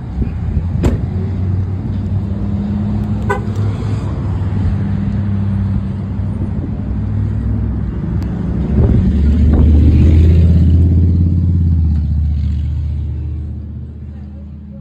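Loud low mechanical hum with rumbling, strongest from about nine to twelve seconds in, with a few short sharp clicks.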